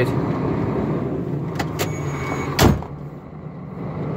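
KAMAZ truck's diesel engine idling, heard from inside the cab as a steady low hum. Two small clicks come about a second and a half in, then a loud single thump about two and a half seconds in, after which the hum is quieter.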